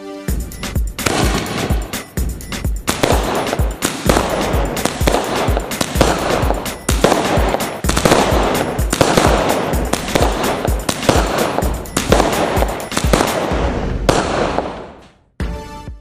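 Multi-shot firework cake firing in rapid succession: a continuous volley of shells launching and bursting, about three thumping shots a second with crackling bangs between. It keeps up for some fourteen seconds, then fades out, and music comes back in right at the end.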